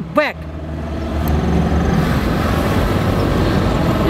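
Road traffic: a motor vehicle driving by, its engine and tyre noise swelling over the first second or so and staying loud.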